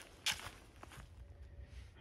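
Footsteps on a dirt trail strewn with dry leaves: two faint steps about half a second apart, the first louder.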